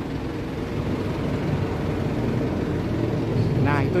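Isuzu Elf NLR 55 BLX microbus's diesel engine idling, a steady low hum.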